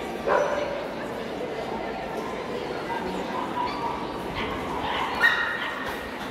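Dogs barking over steady crowd chatter, with one sharp bark about a third of a second in and a second short, higher and louder one near the end.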